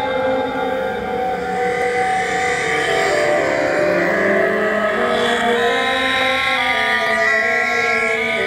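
Electronic music of many layered, sustained synthetic tones drifting slowly in pitch, turning into short stepped notes in the second half.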